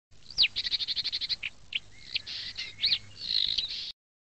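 Wild bird song: a downward-sweeping whistle, then a fast trill of about ten notes a second, then assorted chirps and whistles. It cuts off abruptly just before the end.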